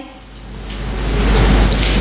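Steady hiss of room noise with a low rumble beneath it, swelling gradually over about a second and a half.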